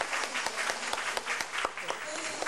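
A hall audience applauding: many hands clapping in a dense, irregular patter.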